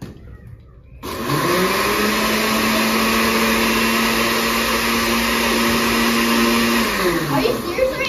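Countertop electric blender running: it spins up quickly about a second in, runs at a steady high speed with a loud whirring motor, then winds down with a falling pitch near the end.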